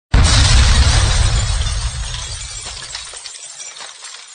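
Stock intro sound effect: a sudden loud blast with a deep rumble and shattering glass, fading away over the next few seconds.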